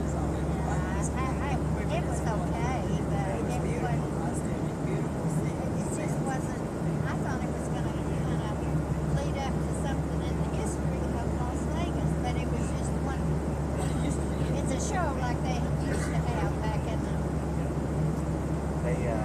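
Steady low drone of an airliner cabin in flight, with faint, indistinct voices of people talking.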